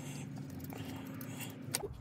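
Quiet room tone with a faint steady low hum, and one light metallic click near the end as the battery cable's terminal is fitted onto the starter solenoid's stud.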